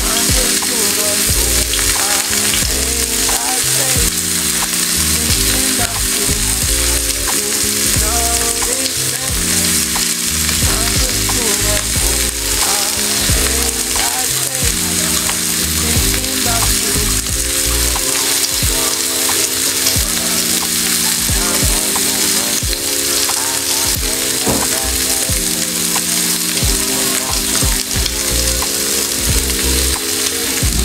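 Chicken pieces frying in oil in a nonstick pan, a steady continuous sizzle. Background music with a stepping bassline plays underneath.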